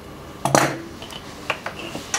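Metal scissors clinking against a hard tabletop as they are put down after cutting a leather belt strap, with a sharper click about a second and a half in.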